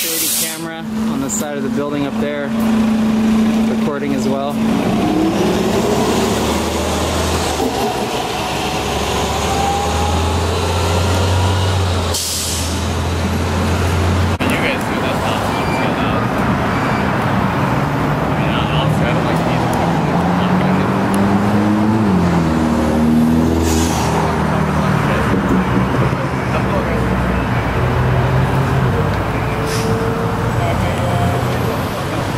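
Car engines in a drive-thru lane, idling with a low steady hum and rising in pitch as cars pull forward. A short sharp hiss comes about twelve seconds in, and another near twenty-four seconds.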